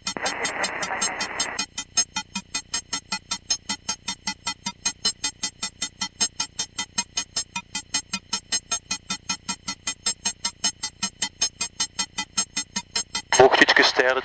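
A rapid, evenly spaced train of short electronic pulses, about five a second, running through the intercom audio. Faint intercom noise is under it at the start and cuts out after about a second and a half; the pulses stop just before the end as talk resumes.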